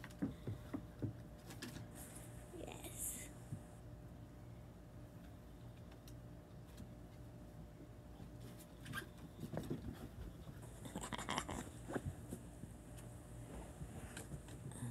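Small dogs playing on a wooden deck: faint, scattered scuffles and light taps of paws and claws on the boards. The sounds come busier in the second half.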